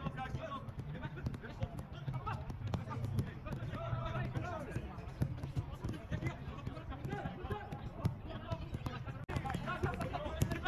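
Soccer balls being kicked on a grass pitch during a passing drill: short, sharp thuds at irregular intervals, several a second at times, with the voices of players calling in the background.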